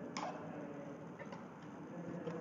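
A few faint, sharp clicks over a low steady hum: one click just after the start and a couple of weaker ones a little past the middle.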